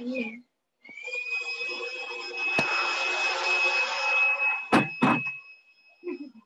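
A shrill, steady whistle over a hiss. It begins with a short upward slide about a second in and holds for roughly four seconds.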